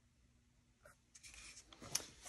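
Almost silent room tone, with a few faint ticks in the second half and one short, sharper click just before the end.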